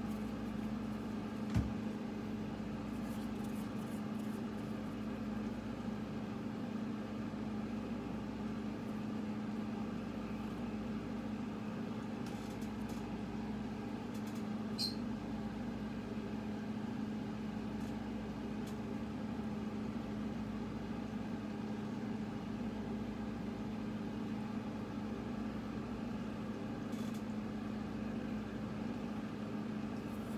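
Steady low mechanical hum running unchanged, with one soft thump about a second and a half in and a faint click about halfway through.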